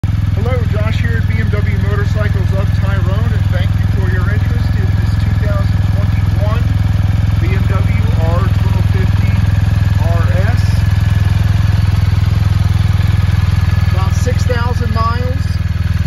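BMW R1250RS's boxer-twin engine idling steadily throughout.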